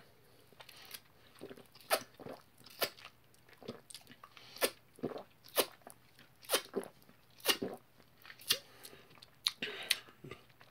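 A person drinking a small bottle of energy shot in repeated gulps, short sharp swallowing sounds at about one a second.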